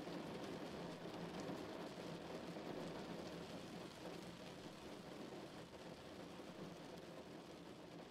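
Heavy rain falling on a car, a soft steady patter that slowly fades out.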